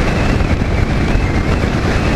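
Wind rushing and buffeting over the microphone on a Bajaj motorcycle running at highway speed, around 80 km/h, with the engine and tyre noise underneath. It is a loud, steady rush with no distinct engine note standing out.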